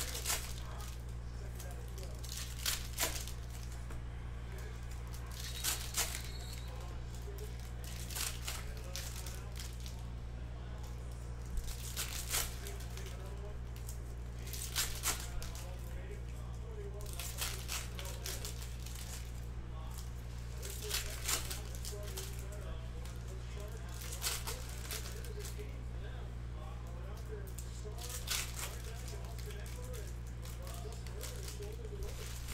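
Trading cards being handled on a table: short scratchy rustles every two to three seconds as cards are slid and flipped through, with foil pack wrappers crinkling, over a steady low electrical hum.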